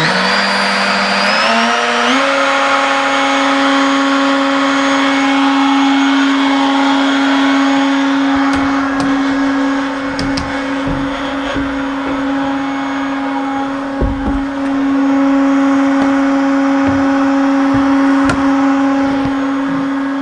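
Makita router spindle on a CNC machine switched on at mid speed: a whine that climbs in pitch over about the first two seconds as it spins up, then holds steady. A few knocks in the second half as the enclosure's panels are handled.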